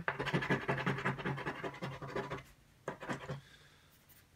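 Scratching off the coating of a paper scratch-lottery ticket: quick, rapid scratching strokes for about two and a half seconds, then a brief pause and a few more strokes about three seconds in.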